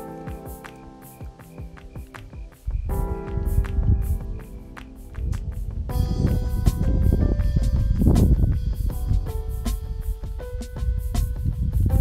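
Background music with a steady beat, building as it goes and getting louder about three seconds in and again about six seconds in.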